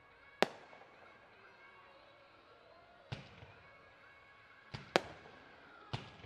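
Fireworks bursting in the night sky: four sharp bangs, the loudest about half a second in, another about three seconds in, and two in quick succession near the end, each trailing off briefly.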